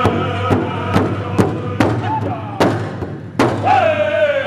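Powwow big drum struck hard with sticks by several drummers together, seven loud single beats at about two a second, the last ones more widely spaced. Men's singing fades between the beats and comes back in strongly near the end.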